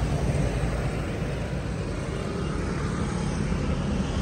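Steady low rumble of road traffic passing nearby, with engine hum from passing vehicles.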